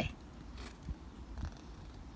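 Faint low rumble with a soft rustle of paper as a picture-book page is turned.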